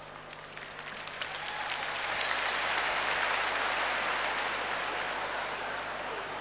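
Audience applauding: scattered claps at first, swelling into full applause about two seconds in and then holding.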